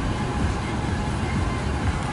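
Car cabin noise: a steady low rumble from a car rolling slowly along a grassy gravel lane.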